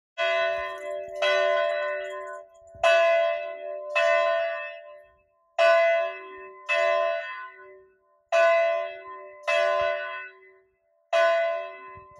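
Church bell tolling in pairs of strokes, the two strokes of each pair about a second apart and each pair followed by a short pause. Every stroke is on the same note and rings on, fading between strokes.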